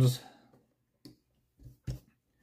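Hard plastic rear suspension arms of a Team Associated RC10B6.4 buggy clicking against the chassis as they are fitted by hand: a few short clicks, the loudest just before the end.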